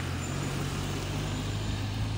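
A motor vehicle's engine running steadily: a low, even hum with street noise.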